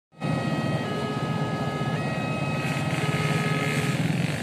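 Passenger train coaches rolling past on the rails, a loud steady rumble of wheels on track with several thin, steady high-pitched tones held over it.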